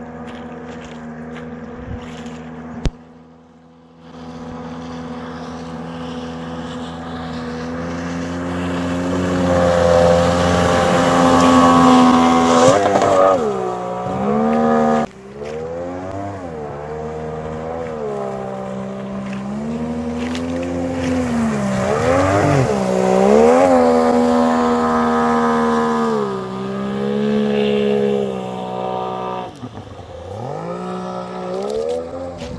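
Outboard jet motor driving an inflatable boat at speed, its pitch rising and falling with throttle and load. The sound breaks off sharply about three seconds in and again about halfway through.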